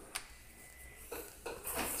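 Handling sounds of a laptop being touched and turned on a desk: a light click about a quarter-second in, then soft knocks and rubbing.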